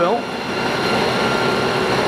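Bridgeport Series II vertical milling machine running with its spindle turning, a steady hum with several constant high tones from the motor and variable-speed head.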